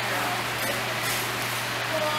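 Room noise of a large indoor riding arena: a steady low hum under an even hiss, with faint distant voices.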